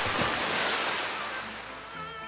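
A big water splash sound effect, a sudden rush of water that dies away over about a second and a half, over quiet background music.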